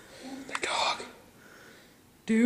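A person whispering briefly, about half a second in, a short breathy burst without voiced tone.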